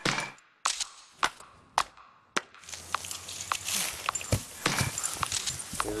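A run of sharp cracks, about two a second, then a steady hiss with scattered clicks from about halfway in.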